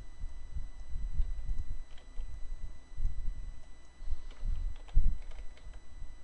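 Computer mouse and keyboard being worked at a desk: irregular low knocks with faint clicks scattered among them.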